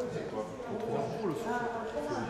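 People's voices talking indistinctly, with no clear words.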